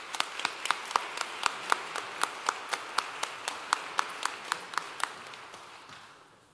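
Applause, with one person's hand claps close to the microphone standing out at about four a second over the softer clapping of a crowd, dying away near the end.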